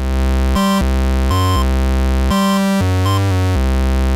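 Modular synthesizer bassline stepping from note to note under a step sequencer, with short high beeps added to mark the gate pulses that the Wiretap module's rising output fires whenever the pitch steps up.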